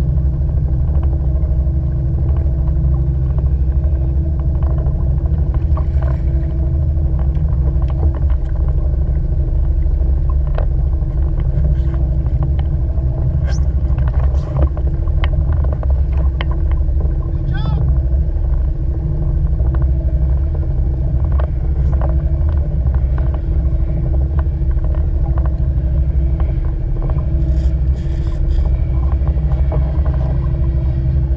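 Small outboard motor on a fishing kayak running steadily at slow trolling speed, a constant low drone with a steady hum, with scattered light knocks and clicks.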